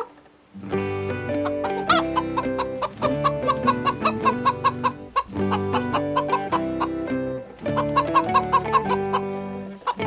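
Domestic chickens clucking in short repeated notes, over background music with held chords that starts about half a second in.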